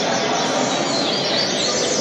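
Caged coleiros (double-collared seedeaters) chirping and singing, many short, quick notes overlapping, over a steady hall din.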